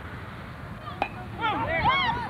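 A single sharp crack about a second in, a bat hitting the ball, then several voices shouting and cheering.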